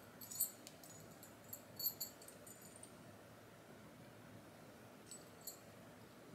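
Faint light clinks and clicks of finger rings being handled and slid onto fingers, a cluster in the first three seconds and two more near the end.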